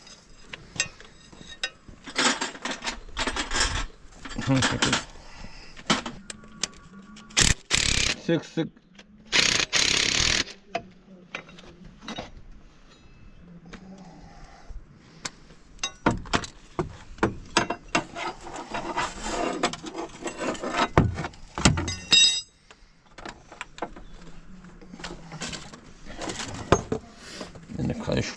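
Metal hand tools clinking, knocking and scraping on engine parts as the timing belt tensioner of a 1998 Ford Transit is worked loose, in a string of separate knocks and clicks with a quick run of small ticks near the end. A short laugh comes about nine seconds in.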